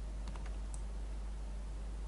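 Steady low hum and hiss of the recording, with a few faint clicks from a computer's mouse and keyboard in the first second.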